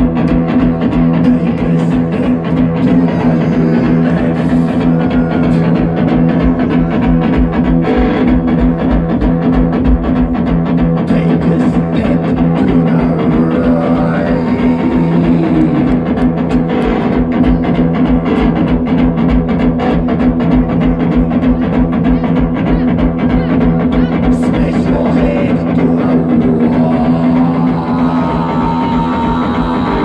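Live one-man-band rock'n'roll: an electric guitar playing a twist rhythm over a steady, regular drum beat with cymbal, played by the same seated guitarist.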